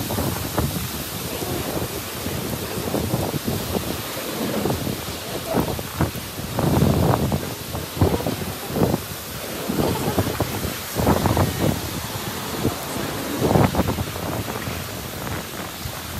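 Typhoon wind gusting and buffeting the phone's microphone in irregular low rumbling surges over a steady hiss.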